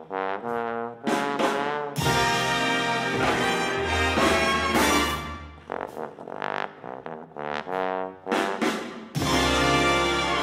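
Bass trombone playing a jazz solo, at first in separate phrases with short gaps, then with the full big band of brass, saxophones and rhythm section coming in loudly behind it about two seconds in and again near the end.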